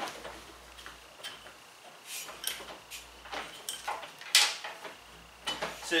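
Metal bars of a pickup bed extender being worked together by hand: a tight-fitting tube being pushed into its mating sleeve, with scattered clicks and clanks, the loudest about four seconds in.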